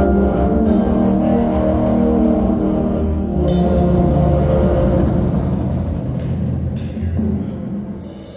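Winter drumline performing: sustained low chords from the front ensemble and speakers, with scattered drum strokes, dying away near the end.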